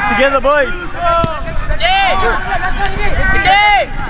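Several people shouting and calling out across an open sports field, voices overlapping, with a single sharp knock about a second in.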